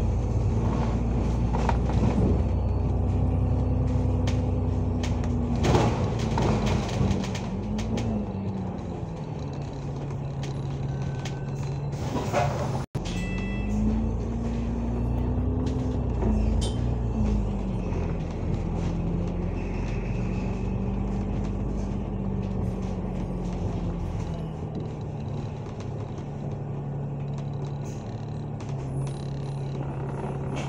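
Alexander Dennis Enviro500 MMC double-decker bus heard from on board while under way: the engine and drivetrain hum over a low road rumble. The note rises and falls several times as the bus speeds up and eases off. The sound cuts out for an instant about thirteen seconds in.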